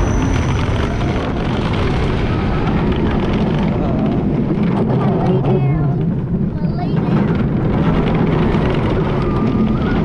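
Roller coaster ride noise from the front seat: steady wind rushing over the microphone and the train rumbling along its steel track as it speeds out of the station launch and along the course.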